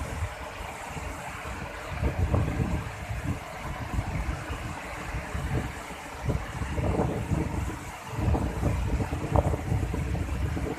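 Waterfall and river rapids rushing in a steady hiss, with wind buffeting the microphone in low rumbling gusts several times.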